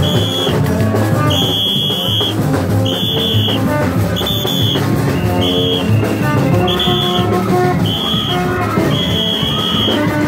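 Gagá band playing in the street: long PVC tube trumpets (vaccines) blown in short held notes over a steady drum rhythm, with a high shrill note repeating about once a second.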